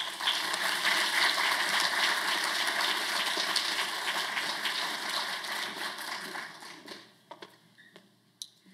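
Audience applauding, a dense patter of clapping that dies away about seven seconds in, with a few faint knocks near the end.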